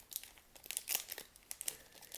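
Upper Deck hockey card pack's foil wrapper crinkling and tearing as fingers work it open: a run of small, irregular crackles.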